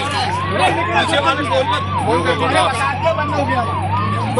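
An electronic siren yelping, its pitch sweeping up and back about two and a half times a second, over a steady low hum.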